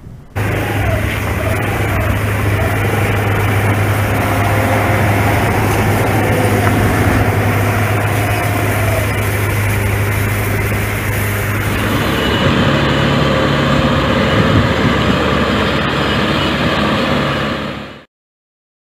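Tractor engine running steadily as it drives along a lane pulling a disinfectant sprayer. The engine note changes about twelve seconds in.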